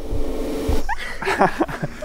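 A person's short, high yelp rising in pitch about a second in, followed by brief vocal sounds, as a woman falls backwards and is caught in a trust fall.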